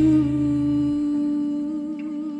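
Live jazz-soul band in a slow, sparse passage: one long held note rings over electric bass and Fender Rhodes. The bass stops about a second in, leaving the held note with a wavering higher tone above it.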